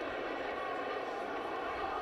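Steady, even murmur of a football stadium crowd.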